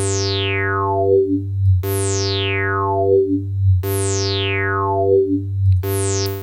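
Pulverisateur analog-style synthesizer playing a sustained note over a steady low bass, its resonant filter sweeping down from bright to dull once every two seconds. It runs through a compressor at default settings, which holds the level a lot more consistent and keeps it from clipping on the resonant peaks.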